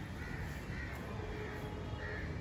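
A bird calling outdoors in a run of short, repeated calls over a low, steady background rumble.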